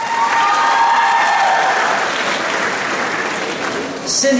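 Audience applauding steadily, with one voice giving a long held cheer over the clapping in the first second and a half.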